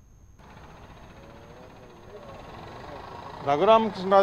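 Brief silence, then, about half a second in, an outdoor live microphone opens onto steady street noise with traffic that slowly grows louder. A man starts talking near the end.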